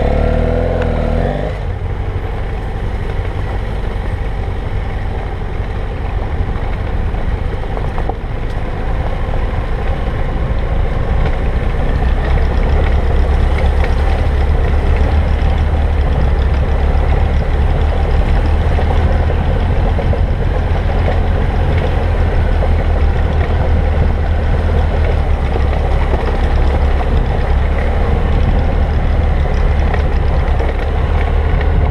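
BMW F800GS parallel-twin engine running as the motorcycle is ridden, heard from a camera mounted on the bike. It grows louder about twelve seconds in, then holds steady.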